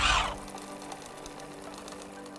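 A short whoosh, then a sewing-machine sound effect of fast, even stitching clicks over light background music.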